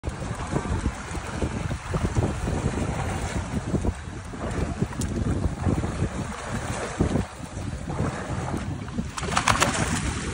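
Wind buffeting the microphone over water sloshing against a small boat's hull; near the end, a burst of splashing as a hooked albacore tuna thrashes at the surface.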